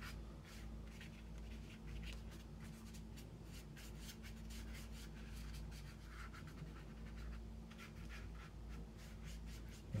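Small paintbrush scrubbing and dabbing on paper through a thick mix of ink, orange juice and cloves: faint, quick, scratchy strokes.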